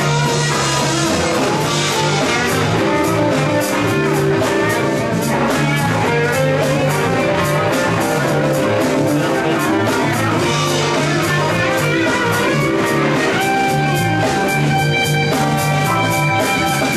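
Live band playing a rock-blues instrumental groove: electric guitars, electric bass, keyboard and a drum kit keeping a steady beat. Long held chord notes come in near the end.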